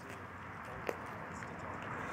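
Faint outdoor background noise, with one short sharp click a little under a second in.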